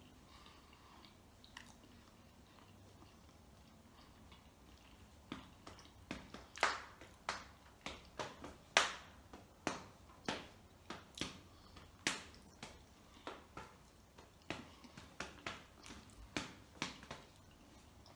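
Mouth smacks from chewing a crêpe close to the microphone: irregular sharp wet clicks, about one or two a second, starting about five seconds in.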